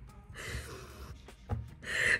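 A woman laughing under her breath: two breathy, airy bursts with no voiced words, the second louder near the end, and a short soft thump between them.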